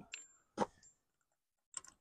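Two light metallic clicks, the first with a brief high ring, and a faint one near the end: a hub nut and socket clinking against the wheel hub as the nut is fitted.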